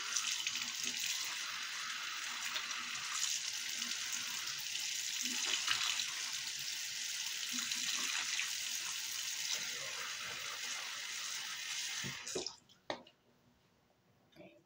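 Bathroom sink tap running steadily, then turned off about twelve seconds in, followed by a single sharp click.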